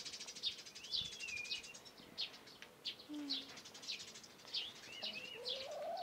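Small songbirds chirping, faint: a string of short high chirps, with a couple of gliding, warbled notes about a second in and again near the end.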